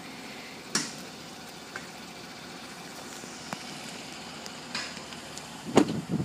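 Steady faint hiss of outdoor background noise, with a few scattered soft clicks and knocks and a sharper knock near the end.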